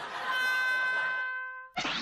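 A held electronic tone with a stack of overtones, an edited-in sound effect, sounding steadily and then fading away over about a second and a half. A man's voice comes in right at the end.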